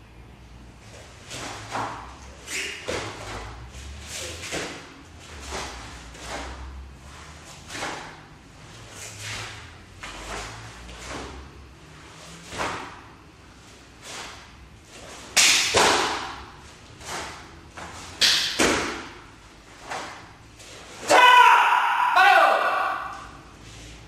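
Taekwondo poomsae (Taegeuk 7) performed solo: a quick run of sharp snaps of the dobok uniform with each strike, block and kick, one or two a second, over dull footfalls on the mat. Near the end comes a loud shouted kihap of about two seconds.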